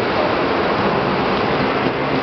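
Steady rushing outdoor noise with no distinct event standing out, of the kind made by wind on the microphone together with street and crowd background.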